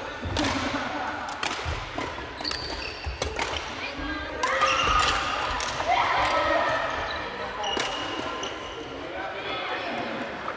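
Badminton rackets striking shuttlecocks in a large, echoing sports hall: repeated sharp clicks from several courts at once, with sneakers squeaking on the wooden floor. Players' voices come in about halfway through.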